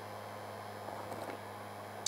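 Electric heat gun running on its low setting, a steady hum and airy hiss, warming a lead jig head so the powder paint will stick.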